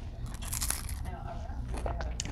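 A bite into a crunchy falafel: one short, crisp crunch about half a second in, over a steady low hum.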